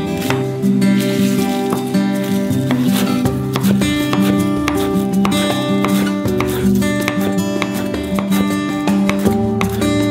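Background music of plucked and strummed acoustic guitar, a run of steady notes.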